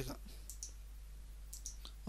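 A few faint computer mouse clicks, a pair about half a second in and more near the end, over a steady low hum.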